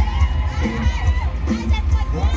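A crowd of people shouting and cheering over loud party music with a heavy, pulsing bass beat.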